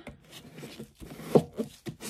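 Frosted plastic plate being slid into the base of a UV resin curing lamp: light plastic rubbing, with one short knock a little past halfway.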